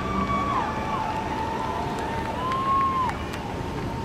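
Onlookers' voices calling out in long, drawn-out shouts over a steady low rumble from the jet engines of the Boeing 747 carrier aircraft flying overhead with the space shuttle on its back. There is some wind on the microphone.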